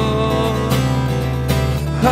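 Acoustic guitar strummed in a steady rhythm, with a man's voice holding one long sung note over it that fades out partway through.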